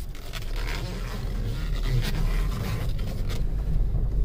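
A 2008 Volkswagen Jetta's engine idling steadily, heard from inside the cabin, with scraping and a few light clicks from the manual gear lever being worked to find reverse.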